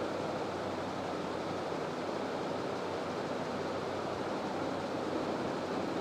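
Steady, even background hiss of room noise with a faint low hum, unchanging throughout.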